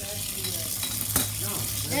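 Kitchen tap running a thin stream of water into a stainless steel sink, a steady hiss over a low hum, with one sharp knock a little over a second in.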